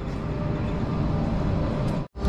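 Steady low rumbling background noise with a faint hum, with no distinct events.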